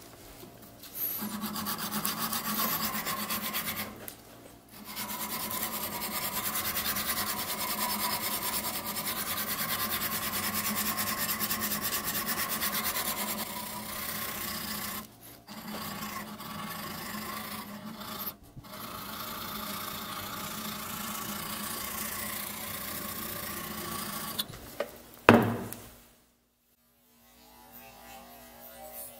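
A tool working the edge of a steel round-knife blade: a continuous rasping, rubbing sound in long runs broken by short pauses. A single sharp click comes near the end.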